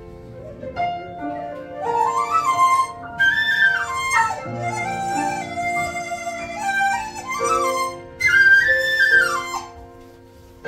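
Chinese bamboo flute (dizi) playing a slow, sliding melody over grand piano accompaniment. The piano holds chords at first, and the flute comes in about two seconds in with bending, gliding notes, falling away just before the end.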